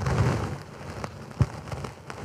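Sheet of paper rustling as it is handled at a lectern microphone, loudest at first and then fainter, with one sharp tap about one and a half seconds in.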